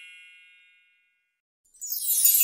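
The ringing tail of a bright, bell-like ding sound effect, fading away over about the first second. After a moment of silence, a shimmering sparkle effect swells in near the end.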